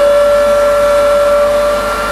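Rotary hay cutter with an 11 kW motor running at speed. Its 3000 rpm knife rotor gives a steady high whine: one strong tone with fainter higher tones above it, while hay is fed in. The whine comes from the aerodynamics of the rotor knives and is normal for this machine, not a fault.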